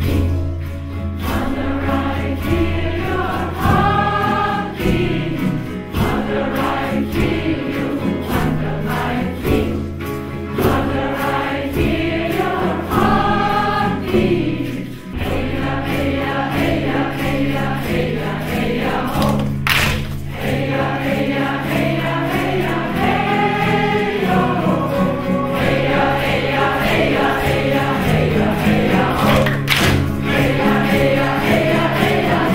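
A large group of men's and women's voices chanting a song together in unison, over a steady, even beat on a hand-held frame drum.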